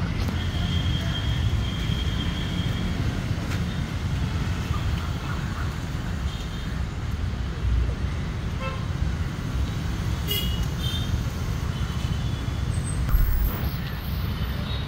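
Steady city road-traffic rumble with short vehicle horn toots sounding now and then.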